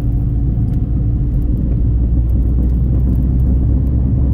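Steady low rumble of a 2001 Saab 9-5 Aero on the move, heard from inside the cabin: the car's turbocharged four-cylinder engine and its tyres on the road.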